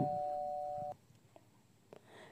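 A steady two-pitch electronic tone, like a held chime, fading slightly and cutting off sharply about a second in; near silence follows.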